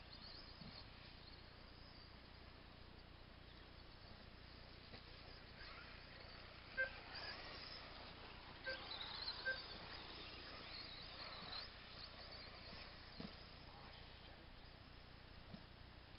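RC off-road buggy driving past on grass, a faint high motor whine with tyre noise that swells and fades between about six and twelve seconds in, with a few short knocks as it passes.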